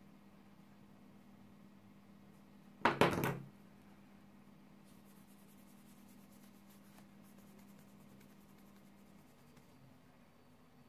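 Quiet room with a low steady hum, broken about three seconds in by a short cluster of knocks as a polish tube and a plastic bangle are handled; faint ticking follows.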